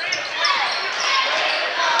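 Crowd noise in a gymnasium during a basketball game: a steady wash of spectator and player voices echoing in the hall, with a basketball being dribbled on the hardwood floor.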